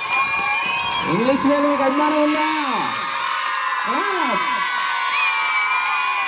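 Raised voices calling out in long, drawn-out cries that rise and fall in pitch, over the noise of a crowd.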